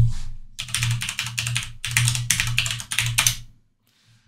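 Fast typing on a computer keyboard: a quick run of keystrokes lasting about three seconds, stopping shortly before the end.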